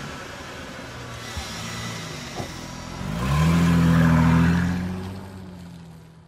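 Car engine revving, likely a logo sound effect: a few short revs, then a bigger rev about three seconds in that holds and fades away near the end.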